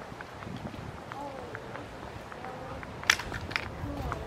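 Footsteps on a paved sidewalk with faint voices in the background, and two sharp clicks a little after three seconds in.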